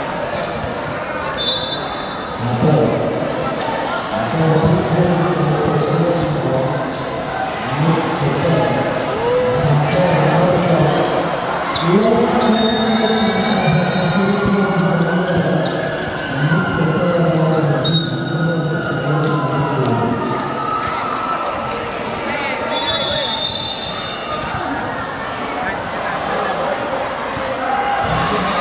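Basketball bouncing on a hard court under a large roof, with a man's voice talking loudly over it for most of the first twenty seconds. A few short, high squeaks, typical of sneakers on the court, come through.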